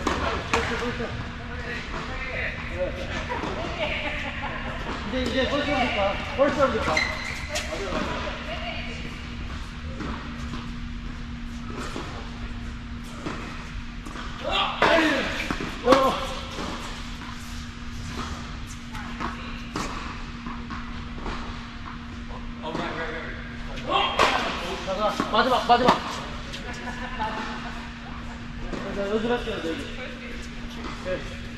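Tennis balls struck by racquets and bouncing on an indoor hard court, several sharp hits with the loudest about halfway through, echoing in a large hall. Voices and a steady low hum run underneath.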